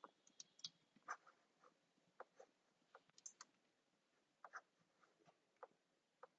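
Faint, irregular clicking of a computer keyboard and mouse: a dozen or so short taps at uneven intervals.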